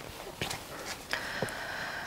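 Faint handling sounds: a couple of soft knocks, then about a second in a steady papery rustle as a paper catalogue is picked up and opened.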